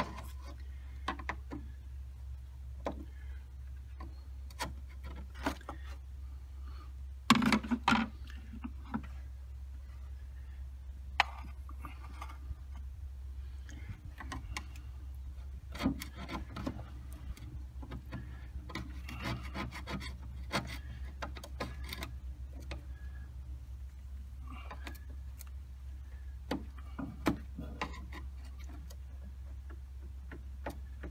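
Screwdriver scraping and clicking against the stuck plastic back cap of a windshield wiper motor as it is pried at. Scattered light clicks and scrapes, with a burst of louder knocks about seven seconds in, over a steady low hum.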